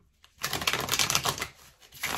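A deck of tarot cards being shuffled by hand: a dense run of rapid card clicks that starts about half a second in, dies away after about a second and picks up again at the end.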